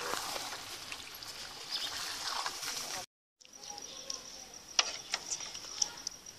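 Chicken karahi curry sizzling in an aluminium pot while a spatula stirs it, with a few sharp knocks of the spatula against the pot in the second half. The sound cuts out for a moment about halfway, and after that a steady high-pitched whine runs under it.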